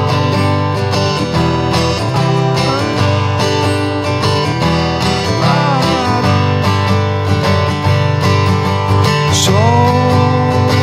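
Acoustic guitar strummed steadily in a song's chord pattern, with a voice singing a few brief phrases over it.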